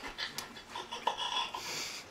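A person chewing a mouthful of breaded veal schnitzel and breathing, with a few soft mouth clicks and a breathy exhale near the end.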